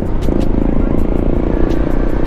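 Honda ADV 160 scooter's single-cylinder engine running as it picks up speed, heard with heavy wind rumble on a helmet-mounted microphone.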